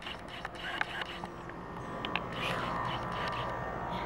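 Handling noise from a handheld camera being carried while walking, with faint clicks of footsteps over a low steady outdoor hum that grows slightly louder in the second half.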